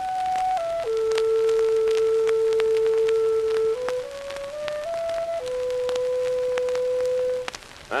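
Solo clarinet on a 1910 acoustic Columbia double-disc record, played over the disc's surface crackle. It plays a slow phrase of held notes: a high note stepping down to a long low one, a short stepwise climb, then another long held note that stops about half a second before the end.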